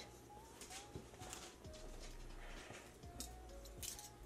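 Faint background music with a soft, wavering melody. A few light clicks and scrapes come from a metal measuring spoon being worked at the spout of a cardboard salt canister, the loudest near the end.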